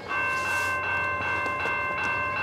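Railroad grade-crossing bell starting to ring and then clanging steadily with a rapid, even beat, the crossing warning activating for an approaching train.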